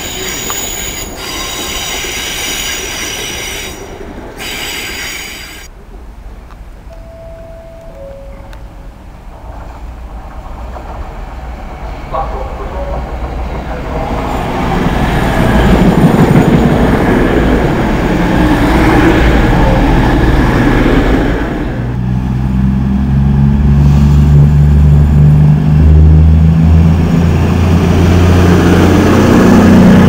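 A CrossCountry Voyager diesel multiple unit arriving at the platform. A high-pitched squeal fills the first few seconds, then a two-tone horn sounds once about seven seconds in. The train's rumble rises as it runs in, and from about 22 seconds its underfloor diesel engines are heard running as the carriages roll past close by.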